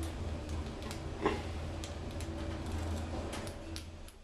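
Otis Europa 2000 lift car travelling down, with a steady low hum and scattered light ticks and rattles; the hum falls away at the very end as the car comes to a stop.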